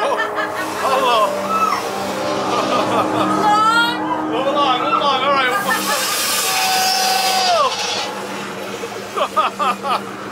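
Haunted-maze soundscape: a steady music drone under voices yelling and screaming, with one long held cry that falls away about eight seconds in and short choppy bursts near the end.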